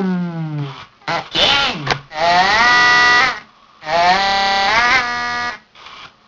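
Circuit-bent Furby's voice chip playing glitched, electronic voice sounds: a falling, warbling phrase, a few short choppy fragments, then two phrases frozen into flat, held buzzing tones about a second and a half long, as a potentiometer on the bends is worked.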